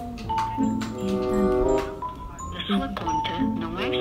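A short melody of steady held notes with a recorded voice, playing from a mobile phone on speaker: the mobile carrier's automated line answering the call, whose menu then asks for a key to be pressed.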